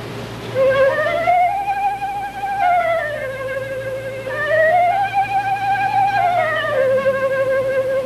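Solo concert flute playing a slow phrase with vibrato, climbing from a lower note to a held higher note and back down, twice.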